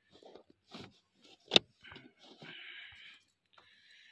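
Rubber car floor mat being handled and laid into the footwell: soft rustles and bumps, one sharp click about a second and a half in, then two stretches of scraping as the mat is pushed into place.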